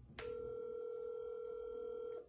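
Ringback tone of an outgoing phone call, coming from a mobile phone's speaker: one steady ring that starts a moment in and lasts about two seconds.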